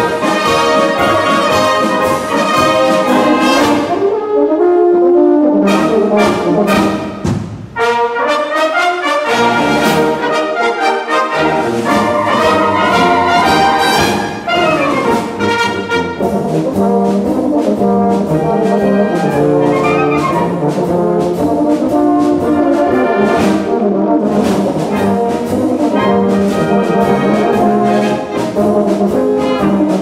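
Two tenor horns play a concert polka as a duet, with a wind band accompanying. Between about 4 and 11 seconds the band's low accompaniment briefly drops out, leaving the soloists more exposed.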